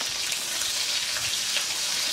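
Lemongrass stalks sizzling in a little hot oil in a wok as they are sautéed: a steady high hiss.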